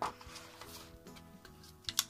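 Soft background music with sustained notes, with a few brief paper rustles and clicks as a page of a die-cut paper pad is handled.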